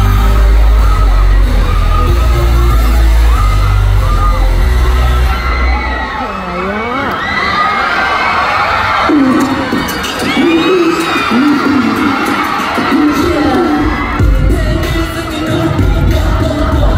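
Loud, bass-heavy performance music over an arena sound system. About six seconds in the bass drops out: a pitch sweep dips down and back up, and a crowd of fans screams and cheers. The heavy bass comes back about two seconds before the end.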